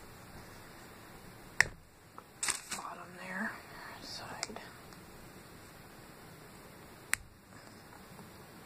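A milk chocolate bar with hazelnuts being snapped apart by hand: a sharp snap about one and a half seconds in, and another near the end.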